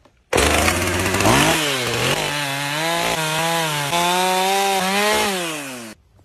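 Husqvarna two-stroke chainsaw revving up and cutting down into the end of a log, its engine pitch wavering as the chain bites into the wood and sagging near the end. It starts and stops abruptly.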